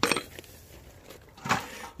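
Peat-based compost dropped into a galvanised metal watering can, clumps pattering and scattering on the metal: two short clattering rushes, one at the start and one about one and a half seconds in.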